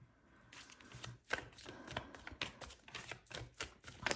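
Tarot deck being shuffled by hand: a rapid, irregular patter of card edges clicking and slapping together, starting about half a second in.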